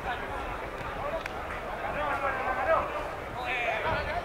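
Men's voices shouting and calling across an outdoor football pitch during play, with a single sharp knock about a second in.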